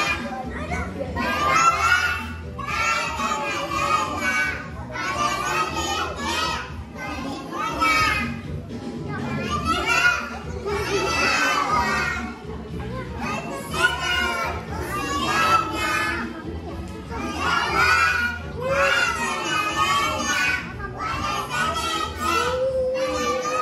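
A group of young children singing together over a recorded backing track, with pitched voices throughout.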